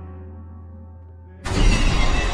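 Low, sustained horror-score drone fading quietly, then, about a second and a half in, a sudden loud crash that works as a jump-scare sting.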